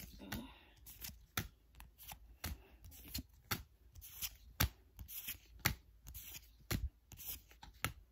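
A stack of Pokémon trading cards being flipped through one card at a time, each card slapping against the stack: a run of short, sharp clicks, about two a second, irregularly spaced.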